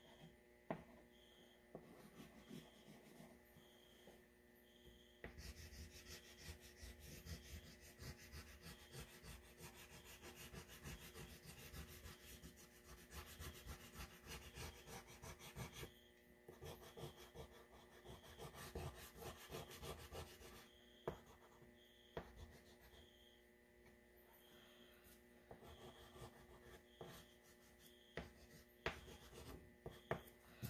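White oil pastel rubbing and scratching on paper as flower shapes are coloured in. It is faint and comes in spells: a long one starting about five seconds in and a shorter one after a brief pause, quieter toward the end.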